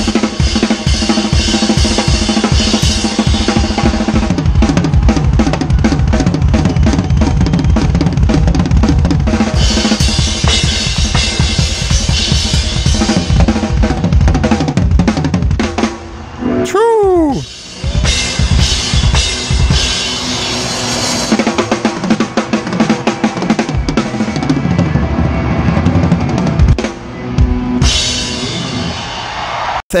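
Live rock band playing, with the drum kit to the fore: driving bass drum, snare backbeat and cymbals. About halfway through the music drops away briefly under a swooping pitch glide, then the full band comes back in.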